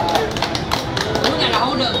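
Several people talking and laughing, with scattered hand claps, over background music.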